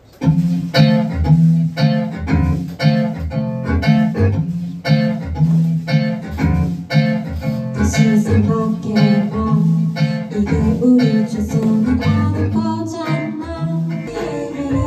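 Plucked guitar accompaniment, with bass, begins at once and plays a steady, repeated chord pattern. A woman's singing voice comes in over it in the second half.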